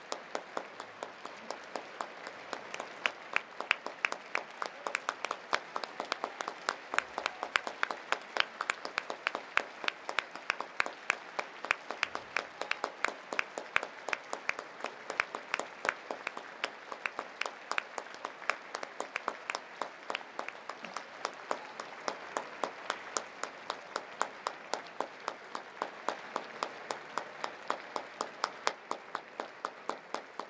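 Audience applauding in a concert hall, with one clapper close to the microphone whose sharp claps stand out at about four a second over the general applause.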